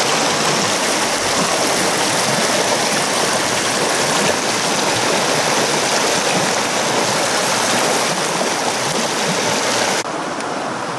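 Fast water of a small rocky mountain stream rushing and splashing over stones close to the microphone, a loud, steady rush.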